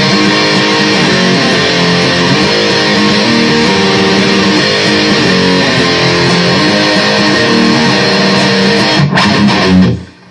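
Electric guitar with heavy distortion playing a metal riff continuously, the notes changing about every half second. It breaks off in a few quick stops shortly before cutting out at the end.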